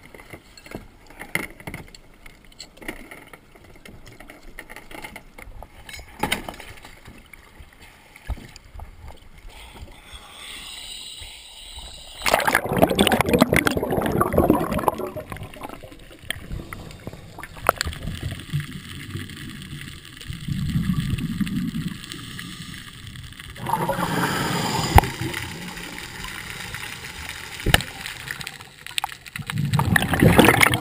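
Scattered knocks and clicks of gear being handled on a plastic kayak, then, from a little before the middle, loud rushing and gurgling water as the diver enters the water and swims underwater, coming in surges.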